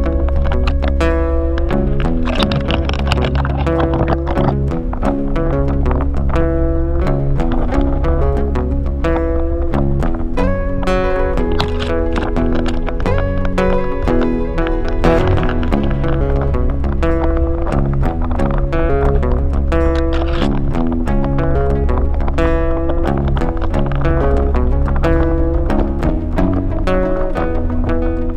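Background music with a steady beat and a strong bass line.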